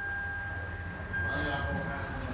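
Repair-shop background noise: a low rumble with a faint, steady high-pitched tone over it.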